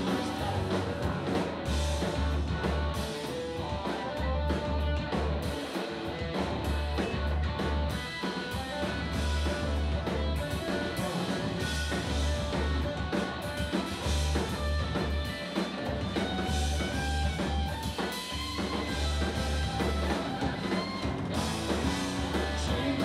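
Live rock trio playing an instrumental passage without singing: electric bass, electric guitar and drum kit, with a heavy, repeating bass line under busy drumming.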